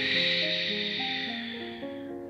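A long, breathy exhale through the mouth that starts at once and fades away over about two seconds, a deep breath out after releasing a held yoga pose, over soft piano background music.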